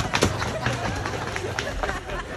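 Several people running on a dirt path, a quick irregular patter of footfalls.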